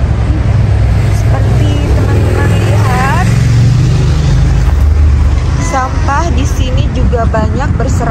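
Loud, steady low rumble of city street traffic. Voices of passers-by come through it about three seconds in and again in the second half.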